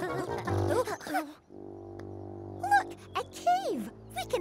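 Cartoon music score under the characters' short wordless voice sounds. Midway the voices stop and a held chord sounds alone, then brief sliding cries return, one falling in pitch near the end.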